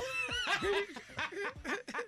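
Radio show hosts snickering and laughing quietly in the studio, between lines of a comic bit.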